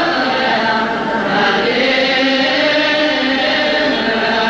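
Ethiopian Orthodox liturgical chant: a group of voices singing long held notes together.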